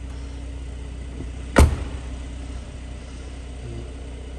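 A single heavy thump about one and a half seconds in, typical of a car door being shut, over a steady low hum.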